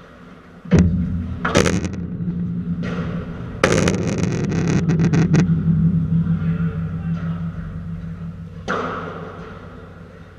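Padel rally: the ball is struck by rackets and hits the court's walls, with a sharp hit about a second in, another half a second later, a dense run of clattering impacts in the middle and a last hit near the end. Each hit echoes in the large hall.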